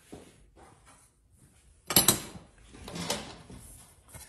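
A sharp metal clack about halfway in, then a lighter knock about a second later: a metal block being handled and set in place against the quarter midget's rear axle.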